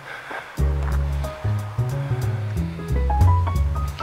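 Background music: a low bass line changing notes every half second or so, a melody stepping upward near the end, and light percussion.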